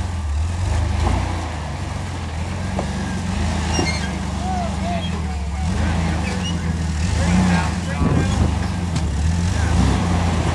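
Jeep Wrangler rock crawler's engine running at low revs, a steady low drone as it crawls over boulders, growing a little louder in the second half. Faint voices of onlookers talk in the background.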